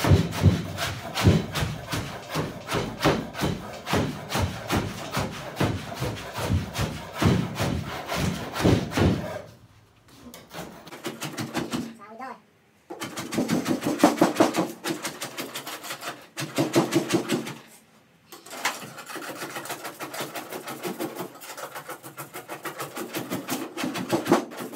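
A hand tool scraping the glued-on vinyl top and its padding off a car's roof, in rapid repeated strokes about three a second. It pauses briefly a few times in the second half.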